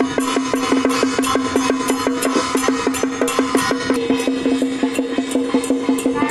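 Taiwanese temple procession music: a fast, even beat of drum and cymbal strikes over a steady held tone.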